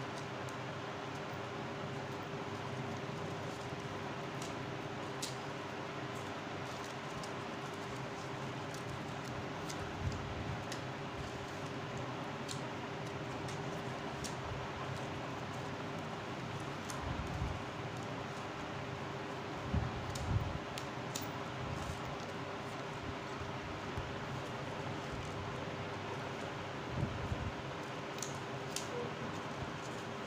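Steady background hum with one constant tone, over which orange paper strips faintly rustle and tick as they are woven through a slit paper fish. A few soft low bumps stand out, twice close together about two-thirds of the way in.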